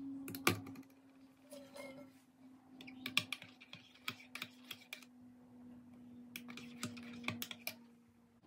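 A metal teaspoon clinking against the inside of a mug while stirring a hot drink, in irregular runs of quick clinks, with a steady low hum underneath.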